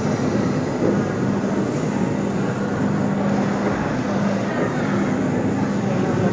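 Steady low machine hum over constant background noise, with no distinct events.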